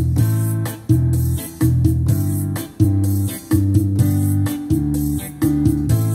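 Yamaha PSR-A5000 arranger keyboard played with both hands: electric-piano-like chords struck in a steady rhythm about every two-thirds of a second over a low bass line. It is set to the Fingered On Bass chord mode, in which the lowest note of the left-hand chord sets the bass.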